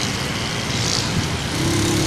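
Motorcycle engine running on the move, with a rough, noisy rumble; a steady humming note sets in about a second and a half in as the throttle is held open.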